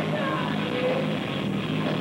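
A hard rock band playing live and loud, led by electric guitar, with a melody line gliding above the full band.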